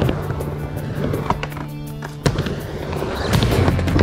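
Skateboard wheels rolling back and forth on a mini ramp, with a few sharp clacks of the board, the loudest about two seconds in, over background music.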